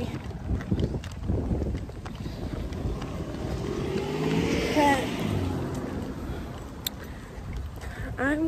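Wind rumbling on the microphone, with a vehicle passing by: it grows louder to a peak about five seconds in, its pitch dropping as it goes past, then fades away.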